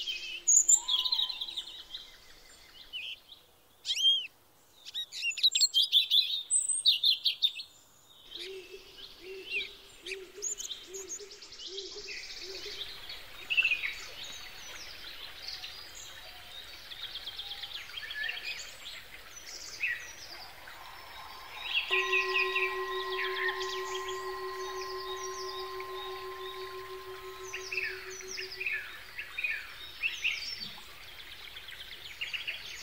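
Songbirds chirping and singing in a dense chorus of short calls and trills. About two-thirds of the way through, a sustained ringing tone sets in and slowly fades over several seconds.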